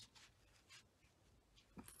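Near silence: room tone, with a few faint, very brief rustles.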